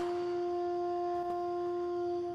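Music: a wind instrument holding one long, steady note that starts suddenly.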